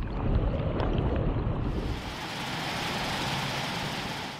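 Fast-flowing river water pouring over a weir, a steady rushing noise. A little under two seconds in it turns brighter and hissier.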